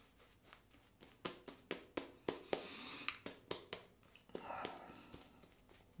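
Razorock Big Bruce synthetic shaving brush working shaving lather over a stubbly face: faint wet crackling and swishing with many small irregular clicks.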